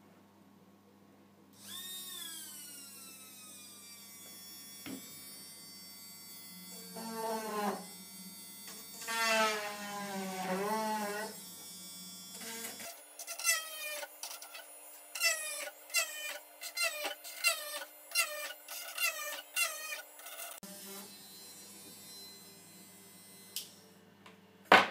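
Small hand-held DC-motor drill whining, its pitch sagging each time the bit is pressed into copper-clad circuit board, in a rapid run of short dips near the middle.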